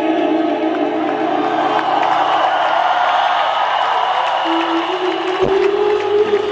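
A live rock band playing a slow ballad in a stadium, recorded from among the crowd: held chords over steady low bass notes, a male singer's voice and crowd noise. About five and a half seconds in, a low hit lands and the chords change as guitar comes in.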